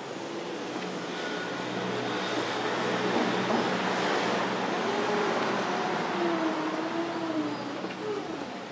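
A vehicle passing along the street: a swell of road noise that builds to a peak about halfway through and then fades. A wavering, howl-like tone rises and falls over it in the second half, and a faint steady hum runs underneath.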